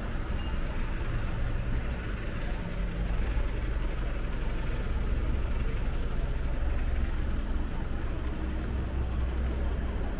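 Outdoor street ambience: a steady low rumble with indistinct voices of passers-by.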